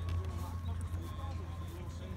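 Faint, distant voices of players and spectators over a steady low hum.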